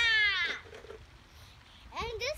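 A child's high-pitched squealing cry, sliding down in pitch over about half a second, then quiet.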